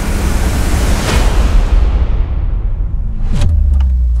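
Cinematic trailer sound effects: a loud rushing rumble whose hiss dies away over about three seconds, then a sudden hit with a falling sweep about three and a half seconds in that leaves a low, sustained boom under the title card.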